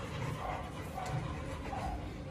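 A dog giving a few short, separate whines, one after another.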